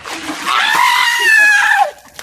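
Ice water splashing as it is dumped over a man's head, and a long high-pitched scream from the shock of the cold that drops in pitch as it cuts off near the end.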